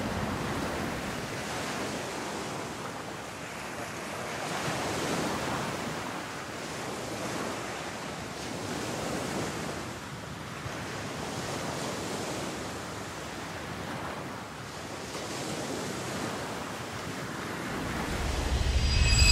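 Ocean waves washing in and drawing back, a steady rush of surf that swells about every three to four seconds.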